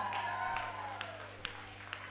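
Echo of a drawn-out ring-announcer call dying away in a bare hall. Four single claps come through it, about half a second apart.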